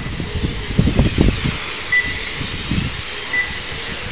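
Electric 1/12-scale RC cars racing on an asphalt track: a steady hissing whir of motors and tyres, with two short high beeps and a few low knocks about a second in.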